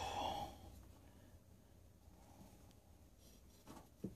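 A person sighs or breathes out heavily once at the start, then low room tone with a brief faint sound near the end.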